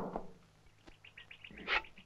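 A bird chirping: a quick, even run of short, high chirps, about eight a second, starting about a second in, with a brief rustling hiss just before the end.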